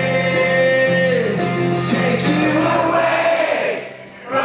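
Crowd singing along in unison over a strummed acoustic guitar at a live rock show, with no clear words. The music drops away for a moment near the end.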